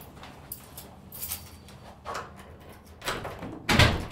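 A self-closing fire door with an overhead closer swinging shut, landing with a loud thud near the end, after a few lighter taps.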